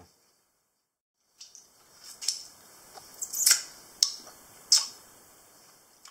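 A man's mouth making a string of sharp lip-smacking and tongue clicks while savouring food, starting after a second or so of silence, the loudest near the middle and again near the end.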